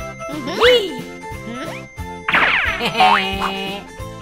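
Bouncy children's cartoon background music with a steady bass pattern. About two seconds in, a loud sparkling chime sweeps down for over a second: a magic transformation sound effect.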